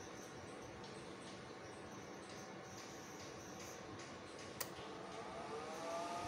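Faint steady background, then a sharp click about four and a half seconds in as the digital low-voltage disconnect reconnects a 48 V low-frequency inverter once the supply voltage reaches its turn-on setting. A rising whine follows as the inverter starts back up, levelling into a steady hum near the end.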